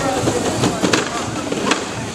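Mantisweight combat robots clashing: a few sharp impacts as the spinning robot's hits land, the loudest about a second in and another near the end.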